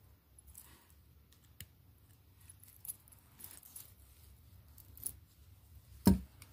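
Faint clicks and light rattles of small metal parts: jewellery pliers, fine chain and jump rings being handled, with a handful of sharp ticks spread through.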